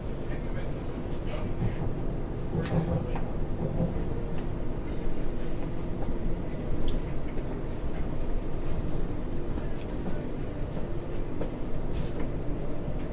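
Electric suburban train running between stations, heard from inside the carriage: a steady low rumble with a constant hum of several tones, and scattered light rattles and clicks.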